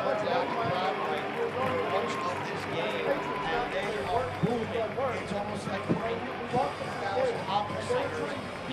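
Ballpark crowd chatter: many voices talking over one another at a steady level, with a few short knocks in the second half.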